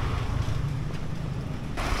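Street traffic and wind buffeting the microphone, a steady low rumble; a motorbike passes close by near the end.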